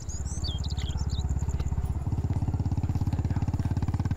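Motorcycle engine running with an even, rapid beat of firing pulses as the bike rides along, growing louder about two seconds in as it comes closer.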